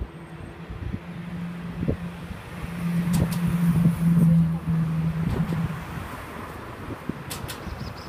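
Road traffic: a motor vehicle's engine hum builds over the first few seconds, is loudest in the middle, and fades away again, over a steady traffic haze. A few sharp clicks come near the end.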